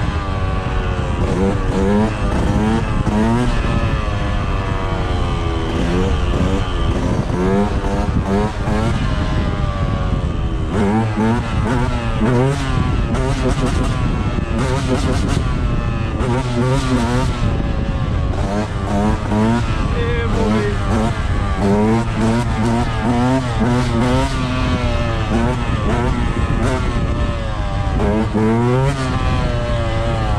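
Dirt bike engine revving up and falling back again and again while being ridden, its pitch rising and dropping every second or so. Wind rushes over the microphone at times.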